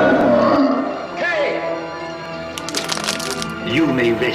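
Dramatic orchestral film score with sustained chords. A brief sliding, voice-like sound cuts in about a second in and again near the end, and a burst of sharp crackles comes around three seconds.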